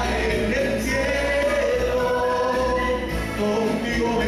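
Gospel hymn sung by a group of voices with instrumental accompaniment: long held notes over a steady bass line.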